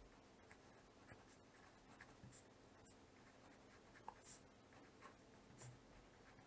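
Faint scratching of a fine-tip pen writing on paper, with a few slightly louder pen strokes about four seconds in and again near the end.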